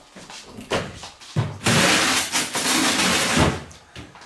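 A freezer being opened and a drawer slid: a couple of knocks and clicks, then a long sliding rush of about two seconds, ending in a thump as it is pushed shut.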